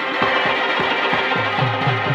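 Barrel-shaped hand drum beaten in a quick even rhythm of sharp slaps, about three a second, joined in the second half by deep bass strokes that drop in pitch, over steady held tones from a melodic instrument.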